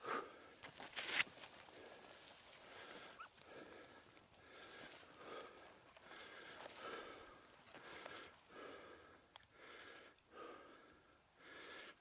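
Faint, rhythmic breathing, about one breath every second and a half, with a few short crackles of dry brush.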